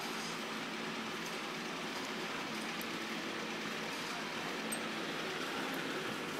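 A steady, even hiss, with two faint short ticks near the middle.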